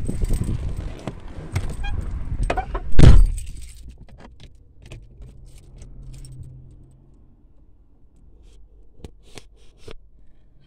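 Someone climbing into a Peugeot 207, with rustling and handling noise, then the car door pulled shut with a loud thud about three seconds in. After that, small clicks and rattles of handling inside the closed cabin.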